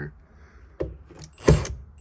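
A cordless drill being set against a screw in a 1977 Corvette's rear window trim: a few short knocks of the bit and tool against the metal, the loudest about one and a half seconds in, with a brief whir of the drill motor.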